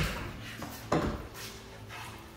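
A single sharp knock about a second in, over faint steady background noise.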